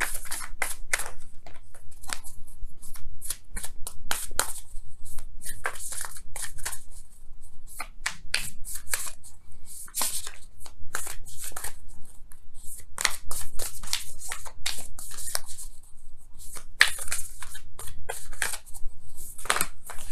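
A deck of oracle cards being hand-shuffled: quick runs of cards slapping and rustling against each other, in bursts with short pauses between.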